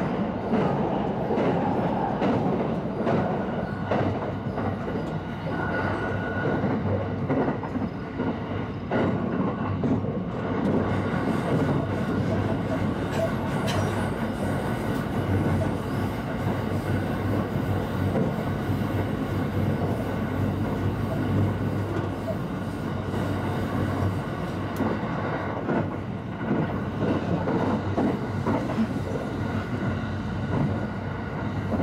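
Cabin running noise of a limited express electric train at speed: a steady rumble of wheels on rail with a low hum and scattered clicks from the track.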